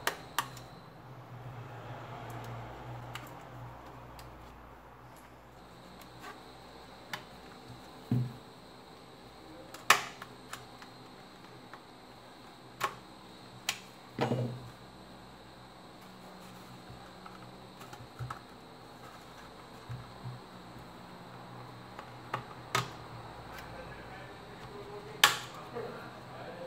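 Plastic back case of a Samsung Galaxy Tab 3 tablet being pried off with a plastic pry tool: irregular sharp clicks and snaps, a second or several apart, as its retaining clips let go. Under them runs a faint, steady low hum.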